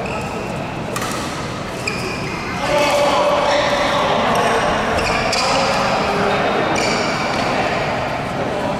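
Badminton rally in a large echoing sports hall: several short, high squeaks of court shoes on the floor and a few sharp racket hits on the shuttlecock, over a steady din of voices from the hall.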